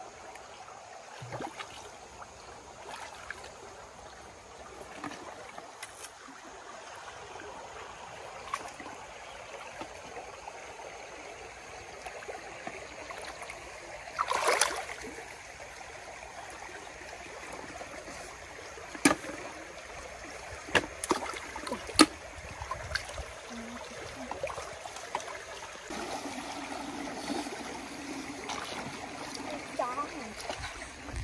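Shallow stream water trickling steadily, with hands working in it: a splash about halfway through and several sharp clicks later on.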